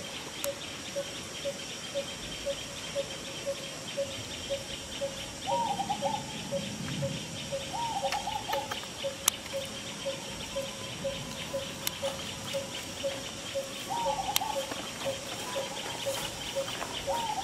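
Outdoor wildlife ambience: a bird repeats a short low note two to three times a second, over a steady high insect drone. Four times, a short wavering call a little higher in pitch cuts in.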